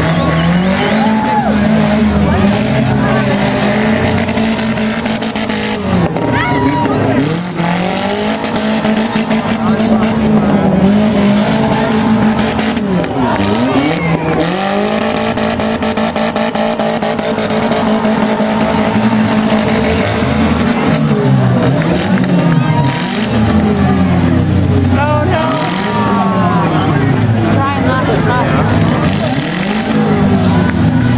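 Several demolition derby cars' engines revving up and dropping back again and again, with repeated short crashes of cars hitting each other.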